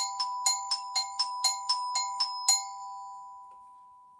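Chime bars struck with a mallet, swapping back and forth between two notes at about four strikes a second, a pitch pattern that goes up and down, up and down. The strikes stop about two and a half seconds in, and the last notes ring on and fade away.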